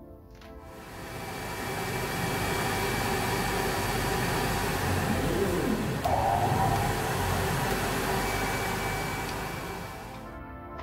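Laser cutter cutting plywood: a steady rushing noise of its air assist and fans that swells in about a second in and fades out near the end, over background music.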